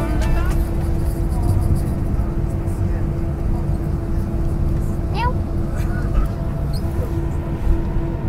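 Steady low rumble of an airliner cabin with a constant hum underneath; a few faint voice sounds come in about five seconds in.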